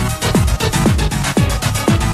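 Electronic dance music of the late-1980s acid house and techno kind: a steady kick drum about twice a second, each hit dropping quickly in pitch, with fast hi-hats above.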